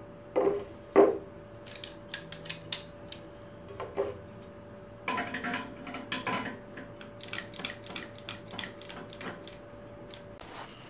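Two sharp knocks on the steel CNC rail frame, then scattered clattering and a run of light clicks as a bar clamp is handled, set over a linear-rail carriage and ratcheted tight.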